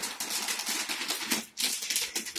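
Clear protective plastic film being peeled off a flat TV screen: a dense crackling rustle with sharper crackles, easing briefly about one and a half seconds in.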